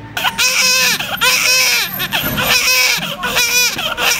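Newborn baby crying in a run of short wails, one after another.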